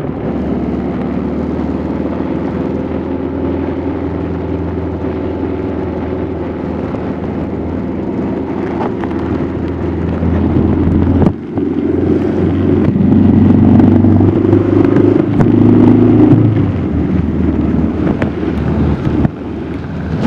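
Motorcycle engine running while riding at steady speed. About eleven seconds in the sound drops briefly, as at a gear change, then the engine runs louder with a higher note for several seconds before easing off again near the end.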